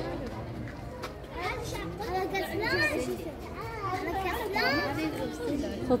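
Children's high-pitched voices talking and exclaiming, with excited rising calls in the second half.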